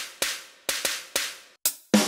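Sampled snare drum triggered from the pads of a Roland SPD-SX PRO sampling pad with sticks: about seven sharp hits in an uneven rhythm, each dying away quickly.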